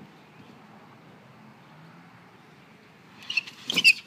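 Mostly quiet, then near the end a short burst of squeaks and thumps: a person sliding down a plastic playground slide, clothes and shoes rubbing and knocking on the plastic as he reaches the bottom.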